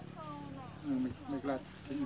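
Mostly a man's voice speaking Thai. A small bird chirps faintly in the background about twice a second, over a steady low hum.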